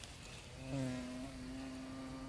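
A flying insect buzzing: a steady hum that starts about half a second in, rises briefly in pitch and then holds.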